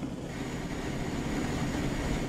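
Steady drone of a V-22 Osprey tiltrotor's engines and rotors in flight, heard inside the cockpit, with a faint high whine over it.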